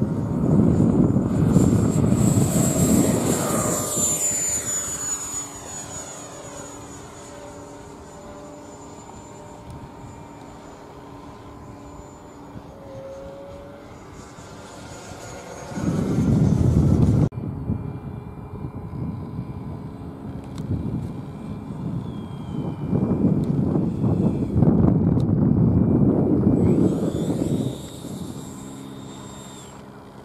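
Foam radio-control F-16 jet's electric ducted fan at high power, a rushing sound with a high whine that falls in pitch as the model passes, then fades as it flies off. It comes back loud on a second pass at about the halfway mark, which cuts off suddenly, and again on a longer pass toward the end before dropping away.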